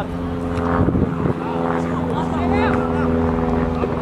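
A steady engine hum, an idling motor running at constant speed with several even tones. Shouting voices come and go over it.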